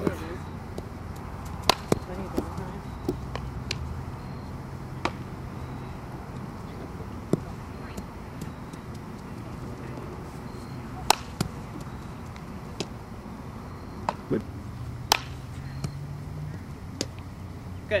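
Scattered sharp cracks of softball-on-bat and ball impacts during an outfield fielding drill, a second or more apart and loudest twice near the middle, over a steady low hum.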